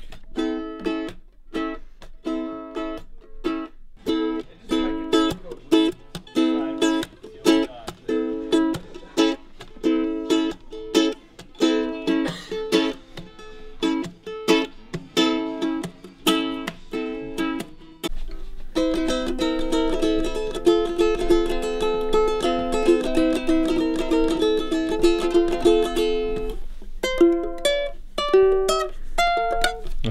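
Acoustic string instrument strummed in steady chords, about two strums a second, switching about two-thirds of the way through to fast continuous strumming, then a few single picked notes near the end.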